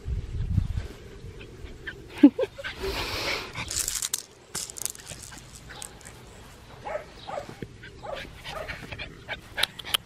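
Australian Shepherd puppy giving a few short yips and whimpers, about two seconds in and again later, among rustling and handling noise in grass.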